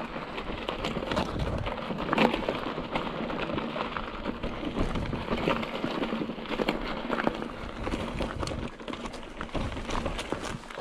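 Hardtail mountain bike rolling over loose rock and dry dirt on rough singletrack: a constant crackle and clatter of tyres on gravel and of the bike rattling over the rocks.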